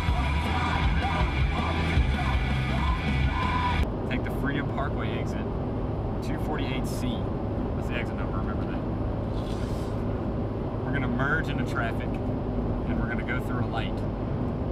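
Music playing on the car stereo for about four seconds. After an abrupt cut, steady road noise inside a moving car, with faint voices now and then.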